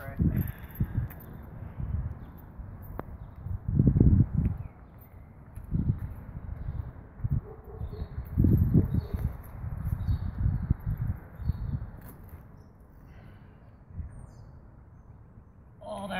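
Outdoor ambience of uneven low rumbling bursts on the microphone, strongest about four seconds in and again around the middle, with faint birds chirping in the background.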